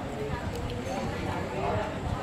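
Background voices of several people talking, unclear and continuous, with a few faint light clicks.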